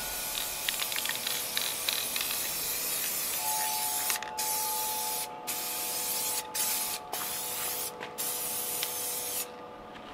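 Aerosol spray can of UV-protective clear glaze spraying in long hissing passes, with several short breaks between them. The spraying stops near the end.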